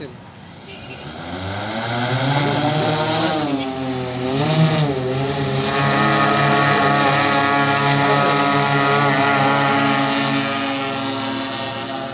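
Multi-rotor agricultural spraying drone's propellers and motors buzzing in flight. The hum rises in pitch over the first two seconds, wavers up and down around four to five seconds, then holds steady and loud.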